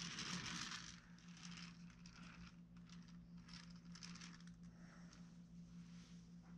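Faint, irregular scraping and rustling of a metal sculpting tool and fingers working modelling clay, over a steady low hum.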